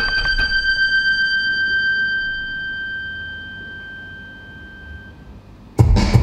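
A high, steady electronic tone held at the end of a song phrase, fading away over about five seconds. Just before the end a loud beat comes in abruptly.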